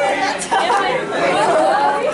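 Many voices talking at once: a group of teenagers chattering.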